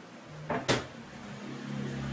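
Two quick knocks of kitchenware being set down on a wooden tabletop, the second sharper and louder, over a low steady hum.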